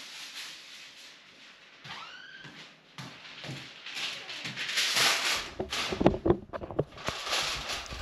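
Paper bag and aluminium foil rustling and crinkling as they are handled, with sharp crackles, loudest about six seconds in.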